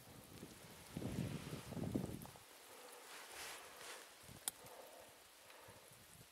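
Faint rustling and handling noise from clothing and the camera being moved, with one sharp click about four and a half seconds in.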